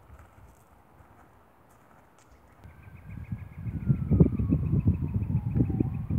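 Wind rumbling on the microphone, loud from about three seconds in. Behind it a faint siren wails, its pitch falling slowly and then turning to rise at the end.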